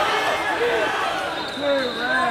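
Coaches and spectators shouting in a large, echoing gym hall during a wrestling match, with thuds on the mats.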